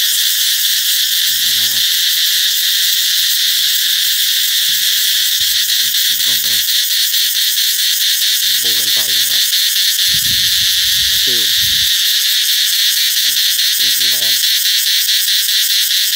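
Cicadas singing loudly in the trees: a continuous high-pitched buzz that becomes a fast, even pulsing about five seconds in. Their summer song, the sign that summer is arriving.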